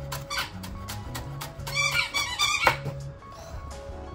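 A White Swiss Shepherd dog squeezing its squeaky toy, a quick run of high squeaks lasting about a second near the middle, over background music.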